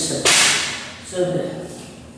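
A sudden, short rustle as a person turns around with a hand raised at her head, fading away within about half a second, followed by a woman briefly saying "so".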